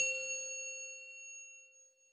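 A single bright bell-like chime struck once, ringing on and fading away over about two seconds.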